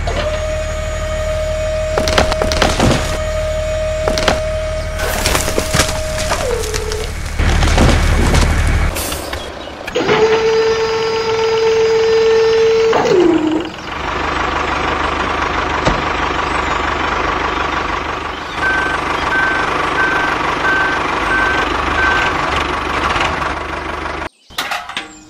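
Small electric motor of a toy dump truck whining steadily, with miniature clay bricks clattering and sliding out of the tipper. The whine drops in pitch as it stops, then runs again a few seconds later. A steady running noise follows, with a row of short beeps about two a second near the end.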